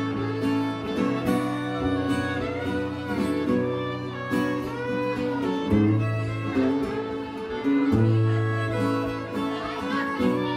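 Fiddle and acoustic guitar playing a tune together, the fiddle carrying the melody with slides over sustained low guitar notes.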